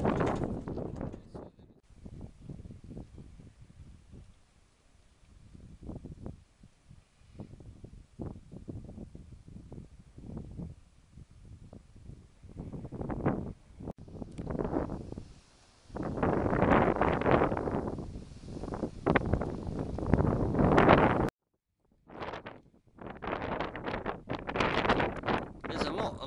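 Gusty wind buffeting the microphone in uneven rushes, faint at first and strongest in the last third. The sound cuts out completely for about a second near the end.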